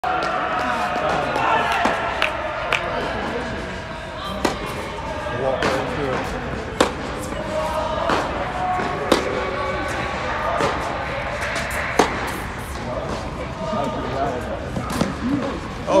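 Tennis rally on an indoor hard court: sharp pops of racket strikes and ball bounces, about a dozen spaced a second or two apart, over a steady murmur of voices.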